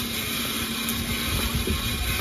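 Blower feeding air into a charcoal corn-roasting grill, a steady motor hum with rushing air, and gusty rumble of wind on the microphone.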